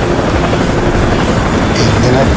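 Helicopter flying overhead, its rotor and engine noise loud and steady.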